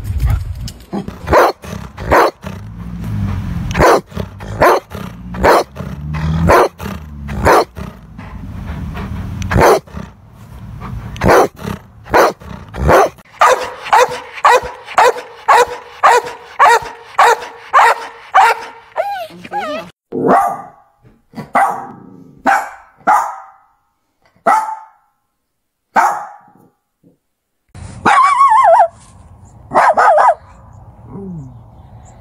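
Several dogs barking in turn: short sharp barks about one or two a second, with a low rumble under them in the first third. In the middle comes a quicker, regular run of higher, ringing barks; then the barks thin out, with a near-silent gap before a loud burst near the end.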